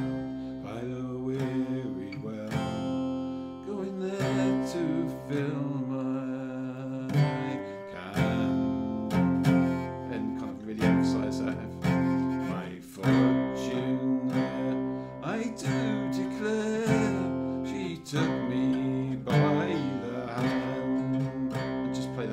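Acoustic guitar in open CGCGCD tuning playing a folk tune, moving between chord strums and single-note melody lines picked in between, with the open strings ringing on.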